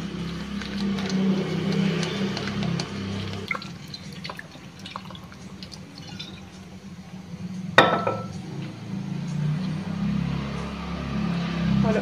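Water poured in a thin stream onto fresh chhena in a cloth-lined strainer, rinsing out the vinegar sourness; the splashing is clearest in the first few seconds. A single sharp knock about two-thirds of the way through, over soft background music.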